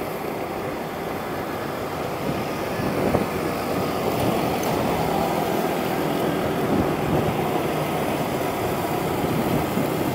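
Steady road-traffic noise heard while riding along a busy road: a continuous rush with engine drone from nearby motorcycles and traffic, a little louder from about three seconds in.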